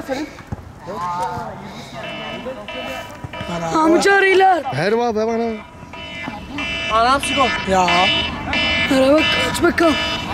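Men's voices shouting and calling across a football pitch during play, with a faint music-like steady tone underneath.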